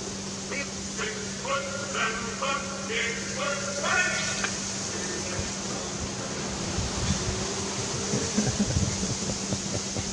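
Indistinct voices talking for the first few seconds over a steady low hum, followed by a few soft low thumps in the second half.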